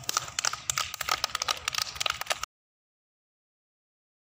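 A small group of young children clapping, with many uneven claps, that cuts off suddenly about two and a half seconds in.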